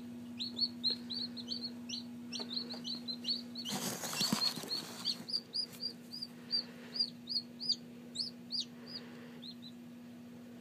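Newly hatched Black Copper Marans chicks peeping: a run of short, high, falling peeps, about three a second, stopping near the end. A steady low hum runs underneath, broken by a brief rustling noise about four seconds in.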